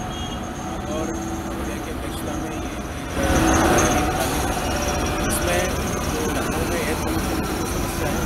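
Loud noise of heavy vehicles running, with voices in the background; it swells about three seconds in.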